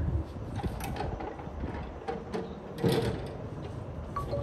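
Heavy wooden door creaking and clunking as it is pushed, with scattered clicks and a louder clatter about three seconds in.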